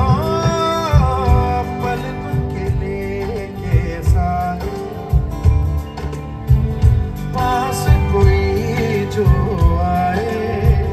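Live band playing a Bollywood song through a concert PA. A male lead vocal holds a wavering sung melody over keyboards, guitars, bass and a steady drum beat.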